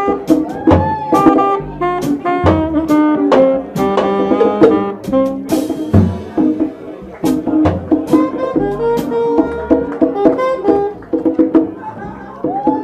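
Live jazz jam: a saxophone playing a melodic line over a rhythm section of drums with frequent cymbal and snare hits and a walking double bass.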